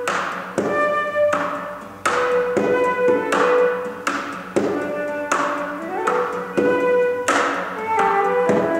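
A flute and an acoustic guitar playing a slow duet. The flute holds long melody notes over guitar chords struck about every two-thirds of a second, each chord ringing out and fading.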